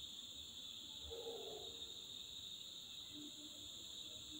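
Faint room tone with a steady high-pitched drone throughout, and a brief faint murmur about a second in.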